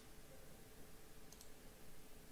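A single faint computer mouse click, heard as a quick double tick a little past halfway, over near-silent room tone.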